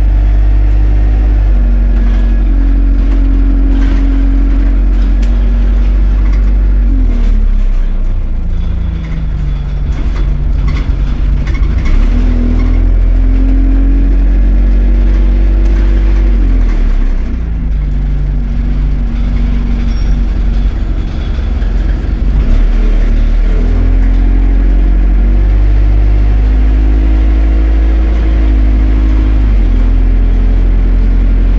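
Single-deck bus engine heard from inside the cabin near the rear: a loud low engine note that drops back twice and then climbs again in steps as the automatic gearbox shifts up through the gears while the bus pulls away and gathers speed.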